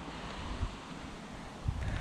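Wind buffeting the microphone outdoors: a steady rushing noise with a low rumble that grows stronger near the end.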